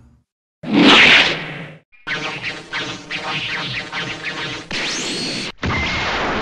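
Anime-style sound effects: after a brief silence, a loud whoosh about half a second in, then a quick run of hits a few per second with a rising whine near the end, cut off suddenly.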